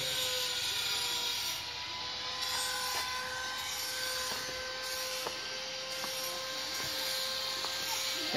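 Steady drone of distant power tools or machinery from restoration work on the temple grounds, with a faint held whine and a few light clicks.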